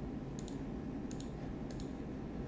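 Computer mouse clicking: three quick pairs of sharp clicks over a steady low room hum.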